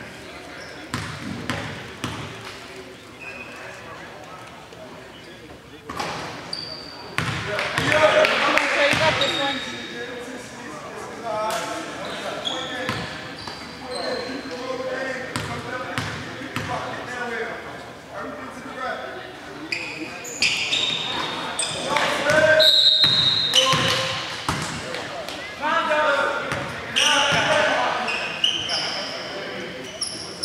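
Basketball bounced on a hardwood gym floor, mixed with players' voices and short high squeaks.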